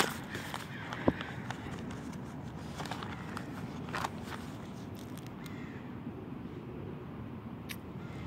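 Steady outdoor background rumble with a few light clicks and rustles as a spiral notebook is handled and brought into view.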